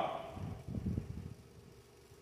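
A few soft, low footsteps on a stage platform in a quiet hall, fading into near-quiet room tone in the second half.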